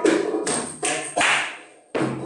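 Hand-struck percussion playing a simple oriental rhythm: about four sharp strokes in the first second and a bit, the last ringing out and fading to a brief near-silence just before the strokes start again.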